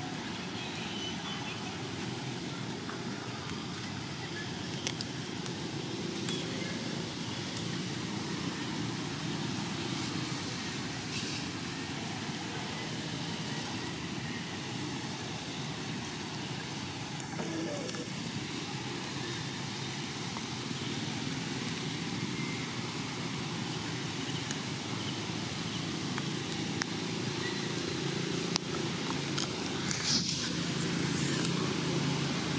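Steady background noise with a few faint clicks scattered through it.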